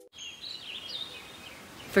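Soft outdoor nature ambience: a steady hiss with a few high bird chirps between about half a second and a second in.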